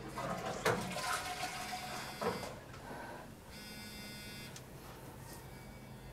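Water running in a public restroom, with a few sharp knocks, stopping about two and a half seconds in. About a second later comes a short buzzing electric whir lasting about a second.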